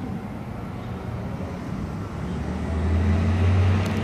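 Low, steady rumble of a nearby motor vehicle's engine, growing louder over the last second and a half, with a small click just before the end.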